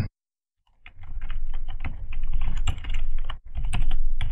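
Typing on a computer keyboard: a quick run of keystrokes begins about a second in, pauses briefly near the end, then resumes.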